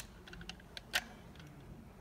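Faint plastic clicks and knocks of a Jelly Belly bean dispenser being picked up and handled, with a sharper click about a second in.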